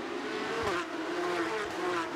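Porsche 911 GT3 Cup race cars' flat-six engines running hard as the pack approaches down a straight. The engine note dips about half a second in, then holds steady.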